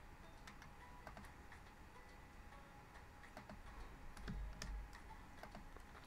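Faint, irregular clicks of a computer mouse and keyboard as points are picked one by one, with a low dull rumble about four seconds in.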